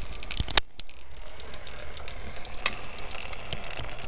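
Homemade capacitor pulse motor running on about a volt and a half, making a steady mechanical ticking and whir. A single louder click comes just over half a second in.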